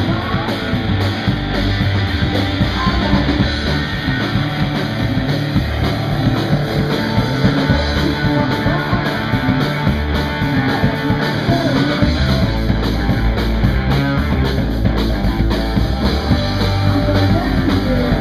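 A live blues-rock band plays loud and steady: electric guitar over a pounding drum kit.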